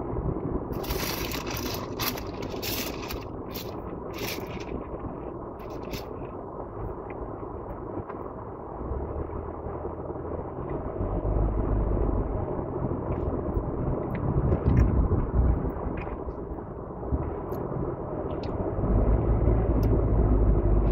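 Crunching and chewing of a bite of crispy fried-chicken taco in the first few seconds, over the low rumble of a car's interior. The rumble grows markedly louder from about nine seconds in as the car gets moving.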